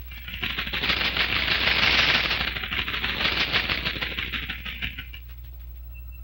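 A fast, dense mechanical clattering that swells to its loudest about two seconds in, then fades away by about five seconds, like something rattling past.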